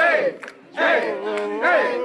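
A group of teenage football players chanting and yelling together in rhythm, about one shout a second, ending on a long held yell.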